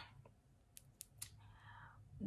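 Near silence: room tone with three faint short clicks about a second in, and a faint soft noise near the end.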